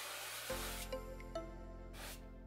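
A brief hiss of cooking-oil spray, cut off about half a second in, then background music with steady held notes.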